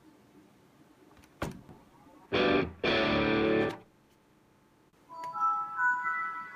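A Toshiba Satellite laptop's sounds as it boots Windows 7 from a new solid-state drive. There is a single click, then a loud, musical sound of held tones in two parts. About a second before the end, a chime of several steady tones begins as the desktop comes up, typical of the Windows 7 startup sound.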